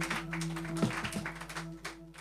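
Scattered applause from a small club audience, irregular claps over a steady low hum from the stage, fading away near the end.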